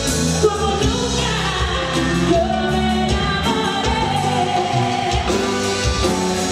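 Live Tejano band music: a woman sings over electric bass, drums, accordion and acoustic guitar.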